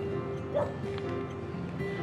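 Soft background drama score with held, sustained notes, and a short whimpering sound about half a second in.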